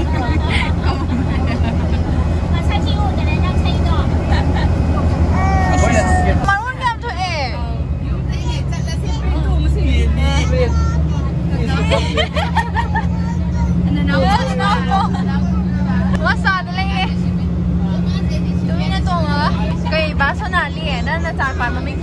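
Passenger bus interior: the engine's steady low drone runs under passengers' chatter. The drone changes in pitch and level about six and a half seconds in.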